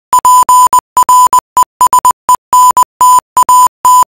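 Morse code beeps: a loud, high electronic tone keyed on and off in quick short and long beeps (dots and dashes) with silent gaps between groups.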